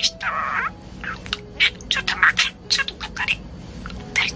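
Budgerigar talking: a rapid, continuous stream of short chirps and mimicked word-like sounds, with a longer buzzy note near the start. The owner reads the chatter as the phrase 'Love-chan, did you poop?'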